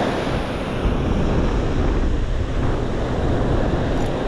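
Ocean surf breaking and washing up the sand, a steady rush of white water, with wind buffeting the microphone.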